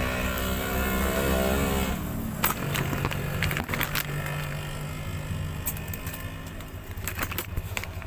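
A refrigerator being shifted across the floor. A low rumbling scrape with a squealing tone lasts about two seconds, then come scattered knocks and clatter. A phone is being handled close to the microphone.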